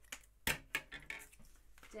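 Scissors snipping through thin cardstock: a few short, sharp clicks and snips, the loudest about half a second in.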